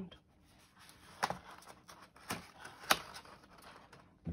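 Pop-up book page being turned by hand: faint paper rustling with three sharp paper clicks as the heavy page flips and the paper pop-up unfolds.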